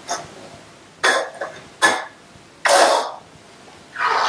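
A woman coughing: three short coughs about a second apart, the last one longer, like clearing her throat.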